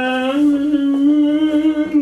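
A single voice holding one long sung note, steady in pitch, which steps up a little about half a second in and holds until just past the end.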